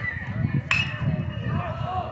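Metal baseball bat striking a pitched ball: a single sharp ping with a short metallic ring, under a second in, as the batter puts the ball in play.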